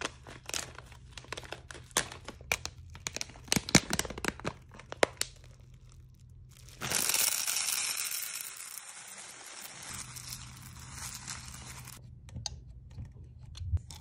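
A bag of hard wax beads being torn open and crinkled, with many small sharp crackles. About seven seconds in, a sudden rush of beads pours into a metal wax-warmer pot, a loud rattling hiss that fades over about three seconds, followed by a few light clicks.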